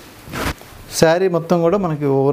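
A short rustling swish of a cotton saree being lifted and handled, followed about a second in by a voice speaking.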